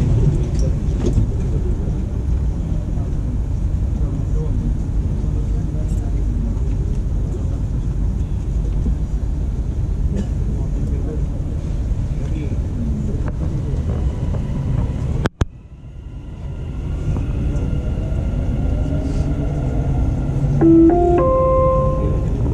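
Dubai Metro train running, heard from inside the carriage: a steady low rumble that cuts out abruptly about 15 seconds in, then builds back up with a rising whine. Near the end a few short stepped tones sound.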